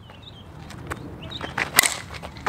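A two-piece composite slowpitch softball bat (Miken Freak 23KP) strikes a 52/300 softball once near the end, a single sharp crack that sounded nice. This is the brand-new bat's first hit as it is being broken in.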